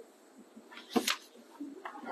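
A young child's brief high-pitched squeal about a second in, with a fainter, shorter one near the end, over quiet room tone.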